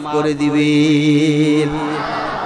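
A man's voice holding one long, steady chanted note on a drawn-out word, in the sung delivery of a Bengali waz sermon. The note fades out near the end.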